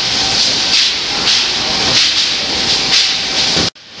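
Industrial fans in a bay-leaf cleaning line running, a steady loud rushing hiss of blown air with a faint hum underneath. It cuts off suddenly near the end.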